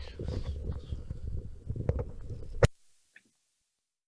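A microphone being handled up close: rubbing, bumping and knocking on it, ending in a sharp click about two and a half seconds in, after which the sound cuts off to dead silence.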